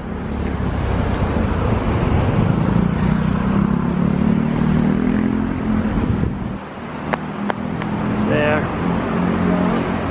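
Road traffic: a motor vehicle passes close by, its engine and tyre noise swelling over the first second and fading about six seconds in. More traffic noise builds again near the end.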